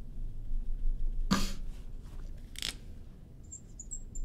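A short cough about a second in, then a brief breathy noise, and faint high squeaks of a marker writing on a glass lightboard near the end.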